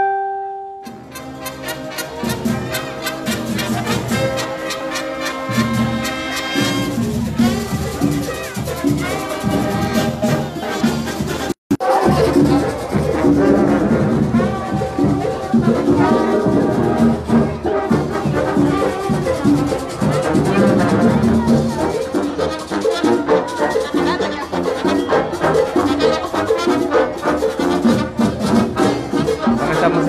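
Brass band music, loud and continuous, with the band's pitched horn lines over a low rhythmic beat. A single held note sounds at the very start before the band comes in, and the sound cuts out for a moment a little before halfway.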